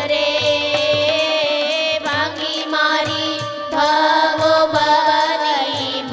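A woman singing a Gujarati devotional kirtan in a held, gently wavering melody, over instrumental accompaniment with a steady beat.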